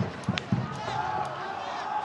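A supporters' drum in the stands beaten steadily, about four beats a second, with the crowd's voices chanting over it, one voice held long in the second half.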